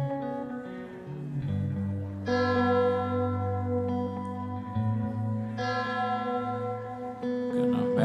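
Live band playing the slow instrumental opening of a song: sustained chords that ring on after each is struck, a new chord coming in about two seconds in and again just past halfway, over a held low bass note.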